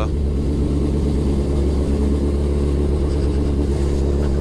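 Suzuki Hayabusa Gen2's inline-four engine running under way at low road speed, a steady engine note.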